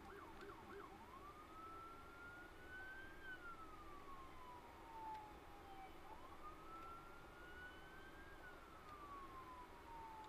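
Faint emergency-vehicle siren, switching about a second in from a quick yelp to a slow wail that rises and falls twice.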